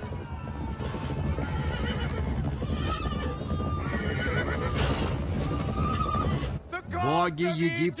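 A large troop of horses galloping, a dense rumble of hooves, with horses whinnying a few seconds in. Near the end the hoofbeats stop and a man speaks loudly.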